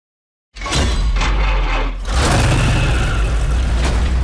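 Trailer sound effects: a loud, deep rumble starts suddenly about half a second in, struck by several sharp crashing hits.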